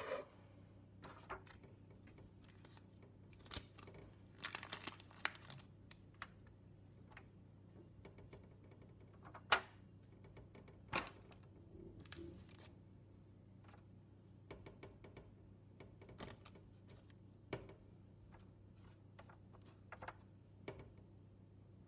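Disposable aluminium foil tray crinkling and clicking now and then as grilled zucchini slices are laid into it by hand, with the sharpest click about halfway through. A faint steady low hum runs underneath.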